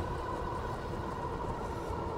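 Riding noise from an all-wheel-drive e-bike on the move: a steady low rumble of wind on the microphone and tyres rolling on asphalt, with a thin steady whine above it.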